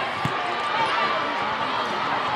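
Volleyball-court crowd noise and spectator voices, with a single dull volleyball thump about a quarter second in.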